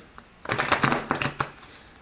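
A deck of cards being shuffled by hand: a quick run of papery card flicks starting about half a second in and fading out by about a second and a half.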